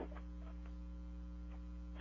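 A faint, steady electrical mains hum with nothing else over it.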